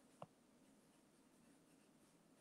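Near silence: faint room tone, with one soft click about a quarter of a second in.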